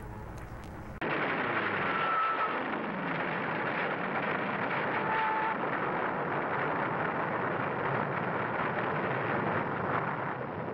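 A dull, steady roar from an archival war-footage soundtrack. It starts suddenly about a second in and carries on, with a couple of brief faint tones in it.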